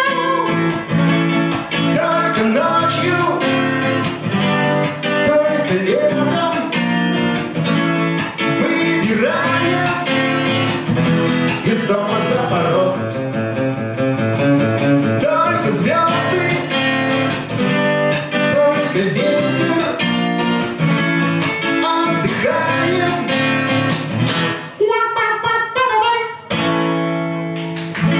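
Acoustic guitar played in an extended instrumental passage of a live song. Near the end the playing breaks off briefly, then a held chord rings.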